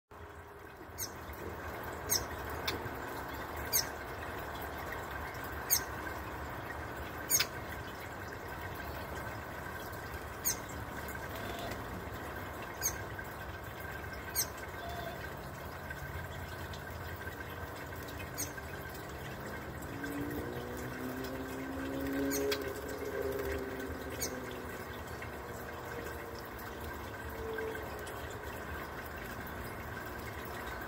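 Birdbath ball fountain bubbling and trickling water steadily, with a faint steady tone. A bird gives short, sharp high chip calls about a dozen times at irregular intervals, and a low drone swells and fades about two-thirds of the way through.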